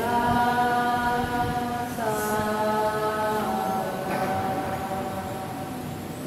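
Voices chanting in long, steady held notes, like a sung prayer in unison. The note changes about two seconds in and again about three and a half seconds in.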